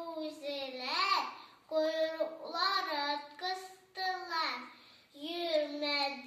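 A young girl reciting verse in a sing-song voice, drawing out her syllables, with short pauses between lines.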